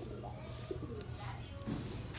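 A dove cooing softly in short low notes over a steady low background hum.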